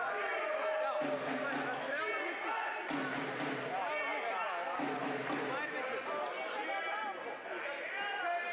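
Continuous talking over the noise of an indoor arena, with a low sound repeating about every two seconds.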